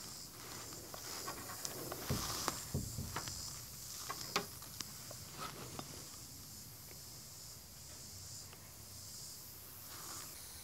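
A few faint knocks and light clicks as a wooden barn-style door on strap hinges is swung open, over a steady high hiss.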